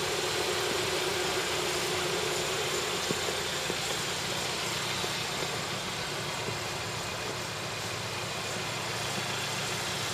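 2011 Hyundai Sonata's engine idling steadily, heard at close range from beside the front of the car.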